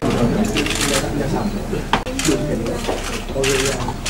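Camera shutters firing in about five short bursts of rapid clicks over people talking.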